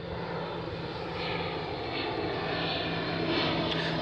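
Steady engine drone of an aircraft flying over, slowly growing louder.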